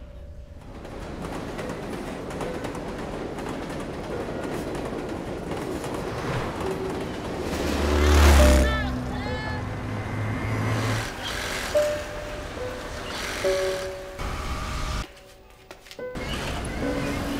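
A moving train's rushing noise swells to a loud peak about halfway through, over a music score that carries on with a few held notes afterwards.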